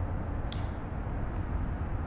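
Steady low background rumble, with one faint short click about half a second in.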